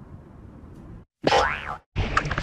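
A cartoon boing sound effect about a second in, lasting about half a second, its pitch rising and then falling, after a second of faint hiss.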